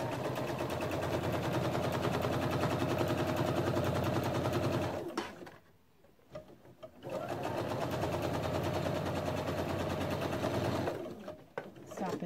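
Pfaff Quilt Expression 4.0 sewing machine running steadily while top-stitching a seam, in two runs of about five and four seconds with a short pause between.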